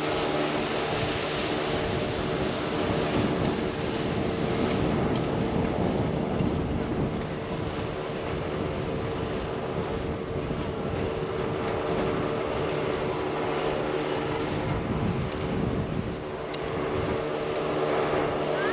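Wind rushing over the microphone and skis sliding and scraping on packed snow as a skier descends a groomed slope, over a steady low hum.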